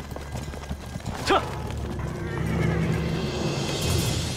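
Horses' hooves clopping on hard ground, and a horse whinnies loudly about a second in. Music swells in the second half.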